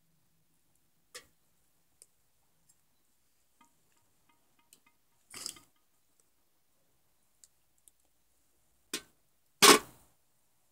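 Charcoal and wood fire in a grill brazier crackling: scattered sharp pops at irregular intervals, with a louder crack about five and a half seconds in and the loudest near the end.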